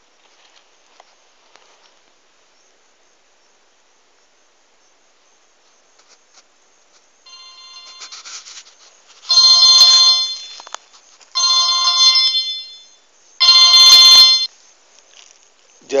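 Mobile phone ringtone: a melody of high tones that starts softly about seven seconds in, then plays three loud phrases, and stops shortly before the call is answered.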